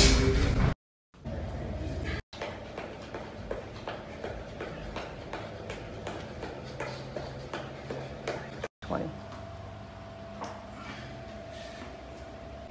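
Gym background sound: loud busy noise that cuts off under a second in, then faint voices, scattered light knocks and clicks, and a steady low hum. It is broken by a few brief gaps of total silence where the sound cuts.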